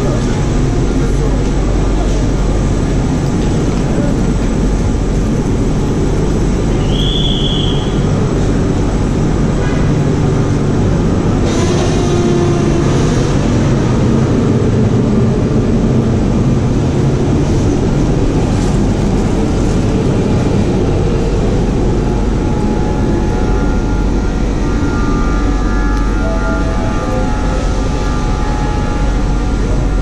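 ETR 460 Frecciabianca electric train standing at the platform, its onboard equipment running with a loud, steady hum and whine. A brief high tone sounds about seven seconds in, and a short noisy burst comes about twelve seconds in.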